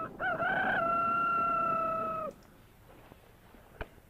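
A rooster's crow: a brief rising start, then one long held note that stops abruptly a little over two seconds in. A single sharp click follows near the end.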